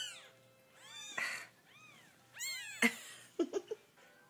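Two-week-old Ragdoll kittens mewing in thin, high cries that rise and fall, about four of them, the loudest late on, while the mother cat lies on top of the litter. A few short, lower sounds follow near the end.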